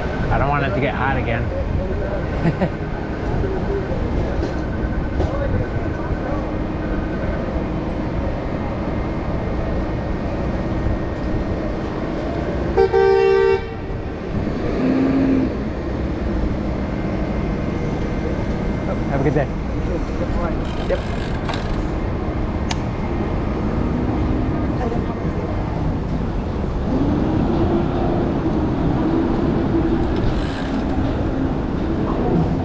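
City street traffic at an intersection, a steady rumble of vehicles. About 13 seconds in, a vehicle horn honks once for about a second and is the loudest sound. A shorter, lower tone follows about two seconds later.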